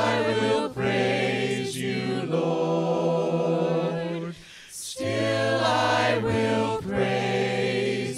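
Congregation and worship team singing a cappella in harmony, with long held notes and a short break for breath about four and a half seconds in.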